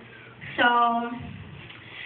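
Speech only: a female voice saying one long, drawn-out "So".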